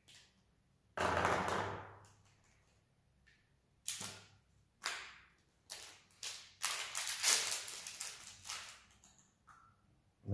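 Crinkling clear plastic packaging being worked open by hand to get at a new green whiteboard marker. There is a short rustle about a second in, then a run of sharp crackles and snaps from about four seconds in until near the end.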